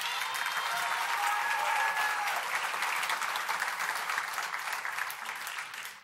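Banquet audience applauding: dense clapping that holds steady and eases off slightly near the end.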